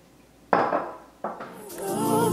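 Two sharp clinks of glassware set down on a hard kitchen surface, about three quarters of a second apart, the first louder and ringing briefly. Music fades in near the end.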